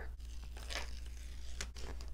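Paper release liner being peeled off a strip of double-sided tape: a faint rustling peel with a couple of light ticks.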